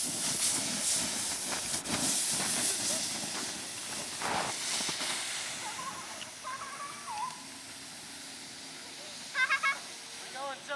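A rushing hiss that fades over the first half or so. Then a high voice calls out briefly, and a quick run of short high yelps comes near the end.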